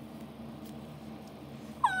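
Low room noise with a faint steady hum, then near the end a child begins speaking in a high-pitched character voice.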